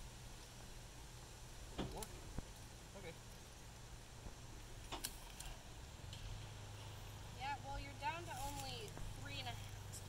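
A few faint, sharp clicks as a knife parts strands of the loaded rope's core. From about seven seconds in, a quiet voice.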